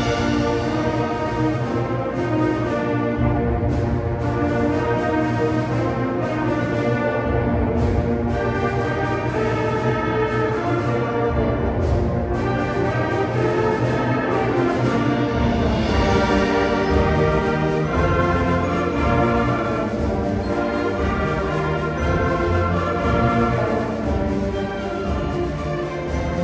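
Sixth-grade school concert band playing a piece, brass and woodwinds sounding sustained chords over a steady low bass line.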